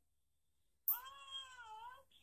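Silence, then about a second in, one drawn-out, high-pitched, meow-like vocal call with a smooth dip and rise in pitch.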